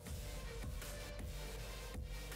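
Background music with a dense, steady sound.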